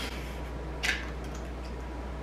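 An egg tapped once against the rim of a stainless steel mixing bowl to crack it: a single short sharp click a little under a second in, over a low steady hum of room tone.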